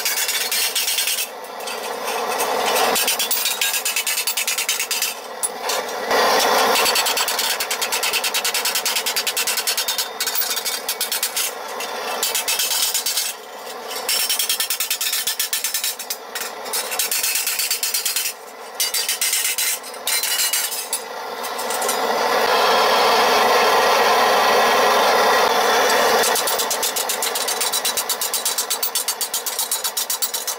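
Sheet steel being hammered over a domed steel stake to raise a cuisse (thigh plate): a dense, rapid run of metal-on-metal hammer blows, sped up, with a few short breaks and a louder, busier stretch a little past the middle.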